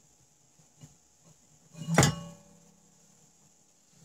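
A single sharp knock about two seconds in, ringing briefly after it, among a few faint handling clicks.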